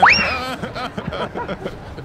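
A person's voice gives a high squeal that shoots sharply up in pitch at the start, then breaks into brief laughing sounds.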